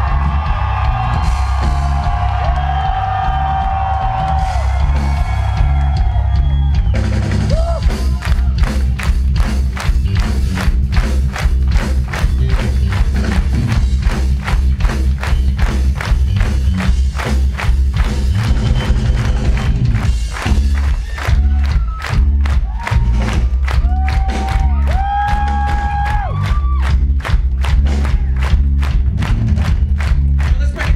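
Live rock band playing loud through a club PA. Long held notes ring over the drums for the first few seconds, then a fast, driving drum beat kicks in about seven seconds in and carries on, with held notes over it again near the end.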